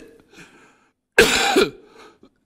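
A man coughing once, a short loud cough a little over a second in.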